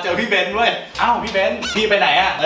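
Men laughing in high, cackling bursts, with a short rising squeal near the end.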